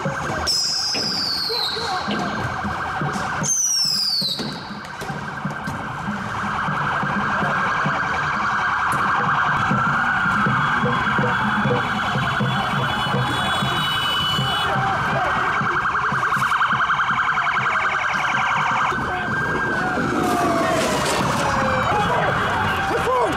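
Police sirens wailing, the pitch sweeping slowly down and back up, over street crowd noise. Two quick high falling sweeps come about half a second and three and a half seconds in.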